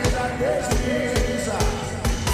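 Band music with a steady drum beat and a melody line over it.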